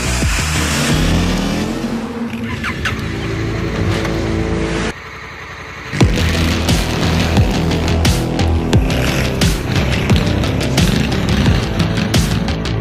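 Dramatic promo-soundtrack music with motorcycle engine revs mixed in, one rising rev in the first two seconds. The music drops away briefly about five seconds in, then comes back with a sharp hit and a steady beat.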